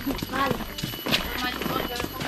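Footsteps of people walking on a dirt path, with a brief faint voice about half a second in.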